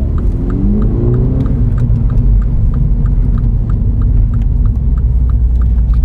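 2016 MINI John Cooper Works' turbocharged four-cylinder engine, through its REMUS aftermarket exhaust, heard from inside the cabin. The engine note rises as the car accelerates in gear over the first second and a half, then holds a steady drone, with a faint regular ticking over it.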